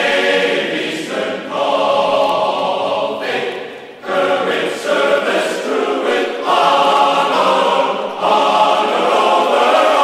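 Choir singing held chords, changing about every second, with a brief drop in loudness about four seconds in.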